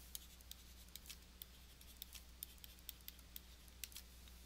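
Faint, irregular clicks and taps of a stylus on a pen tablet as a short line of text is handwritten.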